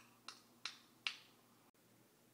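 Three quick finger snaps, the last one the loudest.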